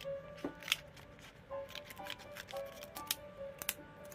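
Scissors snipping and crinkling a thin clear plastic sheet: several sharp snips, the loudest just under a second in. Background music with steady held notes plays underneath.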